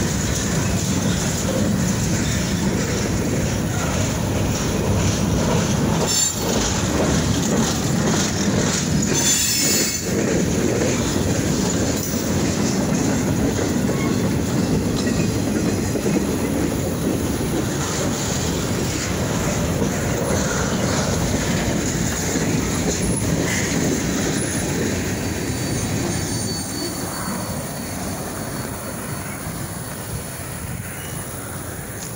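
Freight train cars, covered hoppers and boxcars, rolling past at close range: a steady rumble and clatter of steel wheels on the rails, with a couple of brief high screeches. The sound fades near the end as the last car passes.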